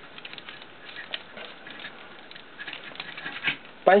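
Small plastic clicks and light rubbing from a Transformers Deluxe Class Bumblebee action figure as its jointed parts are handled and its car-front section is pushed down during transformation, with a slightly louder click or two near the end.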